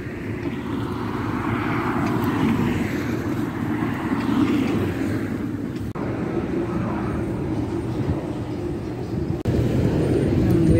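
Steady outdoor rumble of traffic-type noise, swelling and fading over the first half; the sound breaks off briefly twice, near the middle and near the end.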